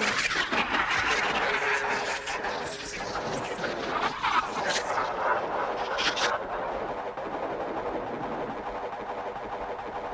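Electronic ambient breakbeat track playing: a dense, noisy wash with fragments of sampled voice and scattered clicks, thinning out after about six seconds.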